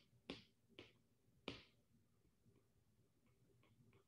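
Faint ticks of a stylus tapping on a tablet's glass screen while writing: three clearer ticks in the first second and a half, then a few fainter ones near the end.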